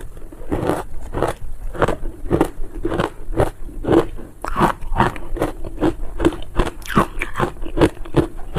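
Close-miked crunching of a mouthful of crushed ice coated in matcha and milk powder, chewed steadily at about two crunches a second.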